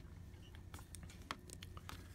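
A few faint, light clicks over a low steady room hum as a fountain pen is handled over paper.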